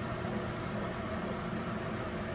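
A wooden spoon stirring hot gelatin liquid with nata de coco cubes in a saucepan, over a steady background hum with no distinct knocks or scrapes.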